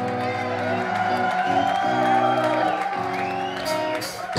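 Electric guitar through an ENGL amp playing a song intro alone: a slow line of held, ringing notes, with crowd whoops over it.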